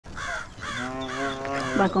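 A crow cawing several times in quick succession, over steady sustained tones.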